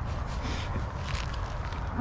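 Wind buffeting the microphone: a steady low rumble with a rushing haze over it, and faint rustles of clothing and handling.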